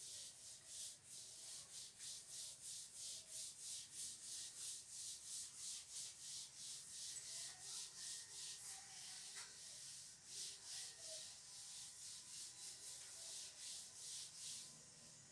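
A duster wiped back and forth across a chalk blackboard, erasing it: faint, even scrubbing strokes at about three a second.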